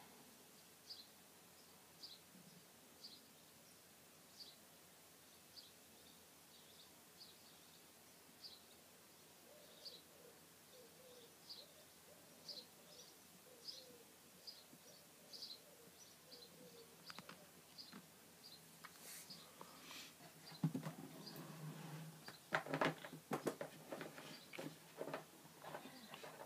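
Faint, short bird chirps repeating about once a second over quiet room tone. In the last few seconds there are some louder clicks and rustling.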